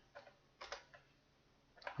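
A few faint, spaced-out clicks of computer keys against near silence.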